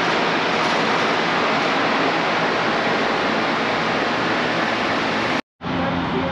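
Loud, steady rushing noise, even and without any tone, that cuts off abruptly near the end.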